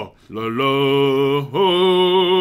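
A man's voice holding two long sung notes at a steady pitch. The second note begins about one and a half seconds in with a short upward slide.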